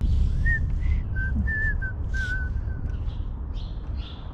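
A man whistling a short tune in brief notes of changing pitch, over a steady low rumble.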